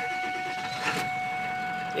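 1999 Ford F-350's 7.3-litre Powerstroke V8 turbodiesel idling, heard from inside the cab, with steady high-pitched tones over the engine noise and a brief click about a second in.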